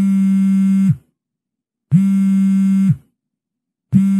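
Telephone call ringing tone: a steady, buzzy electronic tone sounds three times, each about a second long with a second's gap between.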